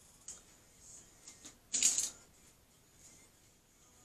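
A few light clicks and then a short plastic clatter about halfway through, as clear plastic mixing cups are picked up and set down on a tabletop.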